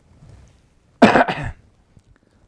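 A man coughing: a faint breath in, then a sharp double cough about a second in.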